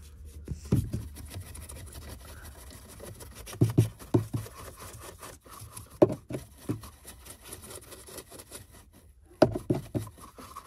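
Detailing brush scrubbing over a car's plastic dashboard and into the empty centre-vent opening: a continuous run of short scratchy brushing strokes, with a few dull knocks from the brush and hand along the way.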